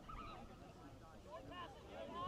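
Faint, distant shouting and calling voices from soccer players and sideline spectators during play.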